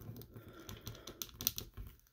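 Faint, irregular small clicks and creaks of hard plastic as a Marvel Legends Cyborg Spider-Woman action figure's arm is twisted at its stiff bicep swivel joint and handled between the fingers.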